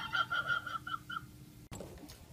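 Stifled laughter: a run of about eight short, high squeaky pulses over just over a second, as someone tries to hold in a laugh.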